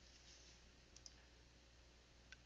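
Near silence with low room hum, and two faint clicks close together about a second in, from a computer mouse as the shared document is scrolled.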